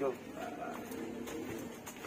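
Faint, low cooing of a pigeon, a few soft calls after a brief word at the start.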